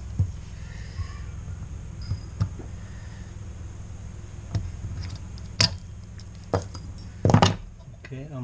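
Scattered small metallic clicks and taps of circlip pliers working the clip on a brake master cylinder's pushrod, over a steady low hum. A sharper click comes about five and a half seconds in, and a quick cluster of clicks near the end.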